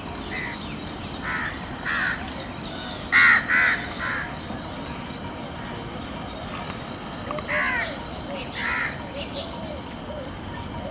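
Crows cawing: short harsh calls scattered through, the loudest a quick run of three about three seconds in, with two more near the end. Behind them, a steady high insect trill.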